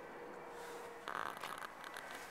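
Quiet car-interior room tone, broken about halfway through by a short, faint rustling scrape with a few small clicks: handling noise as the recording device is moved and rubs against clothing or upholstery.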